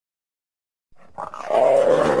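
Leopard growling: silent for about the first second, then a low, rough growl that swells and holds loud near the end.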